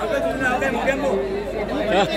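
Several people talking at once: crowd chatter with overlapping voices.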